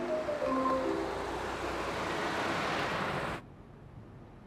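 A few soft melodic background-music notes stepping downward and fading out in the first second and a half, over a steady rush of city street traffic. The traffic noise cuts off abruptly about three and a half seconds in, leaving only a faint low hiss.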